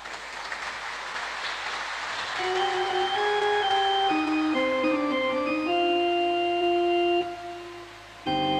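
Church organ playing sustained chords that change step by step, coming in about two seconds in after a soft hiss. It is the start of the recessional music after the dismissal of the Mass.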